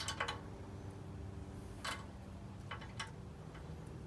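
A few light metallic clicks, the clearest about two seconds in, as the intake rocker arm and lash adjuster on a Predator 212cc Hemi engine's cylinder head are handled. The intake valve lash is still loose, as it comes from the factory.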